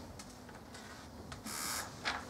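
Marker or eraser strokes on a whiteboard: light scratches, then one stronger scratchy swipe of about half a second near the end.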